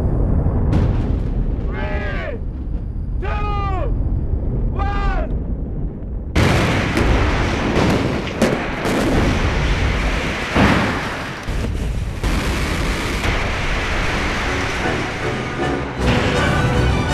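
A low rumble with three short cries falling in pitch, about a second and a half apart. About six seconds in, a loud, dense roar begins suddenly and carries on to the end.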